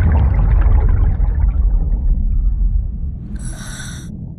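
A deep underwater rumble swells at the start and slowly fades. Near the end comes a short hiss of a scuba regulator inhale.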